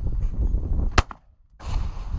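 A single shotgun shot fired at a clay target about a second in, one sharp report with a brief ringing tail.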